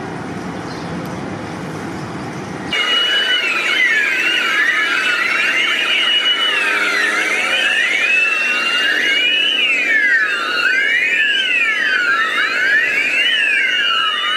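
Several emergency-vehicle sirens of an ambulance and fire-truck convoy wailing together, their rising and falling pitches crossing over one another. They start suddenly about three seconds in, after a steady hiss.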